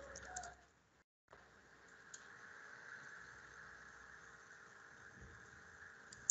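Near silence: faint steady room hiss on the microphone line, cutting out completely for a moment about a second in.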